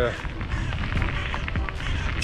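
Wind noise on a chest-mounted action camera's microphone while riding a mountain bike on a paved path: a steady, deep rumble with scattered small rattles and ticks.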